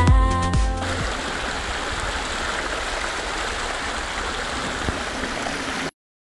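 Electronic music ends about a second in, followed by a steady rush of running water that cuts off suddenly near the end.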